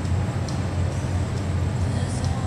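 Steady low rumble of background noise in a large indoor arena, with a few faint ticks above it.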